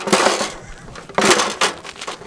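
A small step ladder scraping and knocking against the rim of a concrete hatch as it is lowered into the hole, in a rough scrape at the start and two short clatters a little over a second in.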